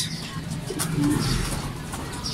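Racing pigeons cooing in their wire loft.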